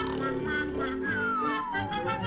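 Early-1930s cartoon soundtrack music, a bouncy band score, with a single whistle-like note sliding steadily downward through the second half.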